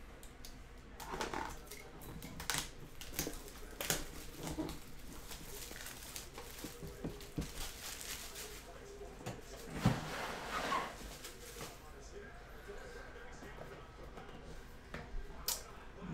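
Plastic shrink-wrap being torn and peeled off a cardboard trading-card box, with crinkling and rustling and scattered clicks of handling, then a sharp knock about ten seconds in as the box is handled and its lid opened.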